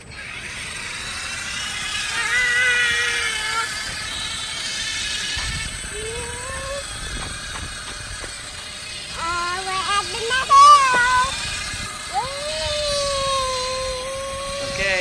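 Whine of a STACYC electric balance bike's motor under throttle. It comes in several spells whose pitch rises as the bike speeds up, and settles into a steady whine over the last two seconds. A brief warbling, voice-like sound partway through is the loudest moment.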